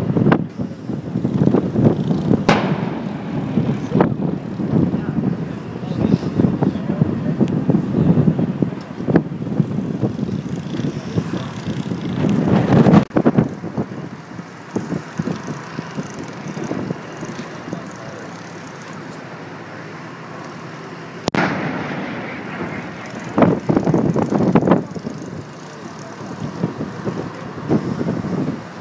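Several loud, sharp reports from a destroyer's Mk 45 5-inch deck gun firing single rounds several seconds apart. Wind buffets the microphone between shots.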